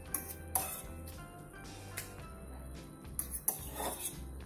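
Metal fork clinking and tapping against a stainless steel bowl while lifting petals out of water: a few sharp clinks, about half a second and two seconds in, and a quick cluster near the end. Background music runs underneath.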